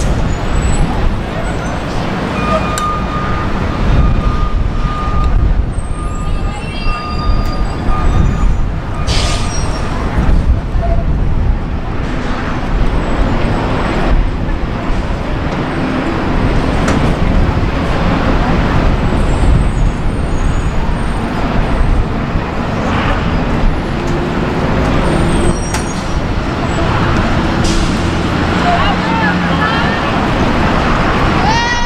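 Wind buffeting the camera microphone in an uneven low rumble, with distant voices of players and spectators calling out across the field.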